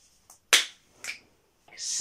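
A loud, sharp finger snap about half a second in, followed by a fainter click about a second in, then a quick intake of breath near the end.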